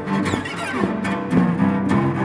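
Solo cello bowed in free improvisation, with repeated bow strokes. In the first second a high overtone slides down in pitch.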